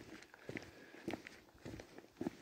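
Faint footsteps on the ground, a soft step about every half second.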